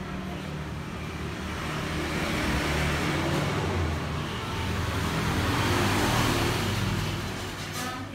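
Road traffic: the low engine rumble of passing motor vehicles, swelling twice as they go by.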